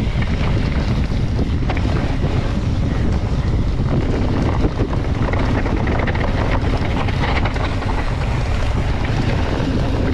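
Wind buffeting the microphone while a mountain bike descends fast over a dry, leaf-covered dirt trail, its knobby tyres crackling and rumbling over the ground without a break. A single short knock a little before halfway.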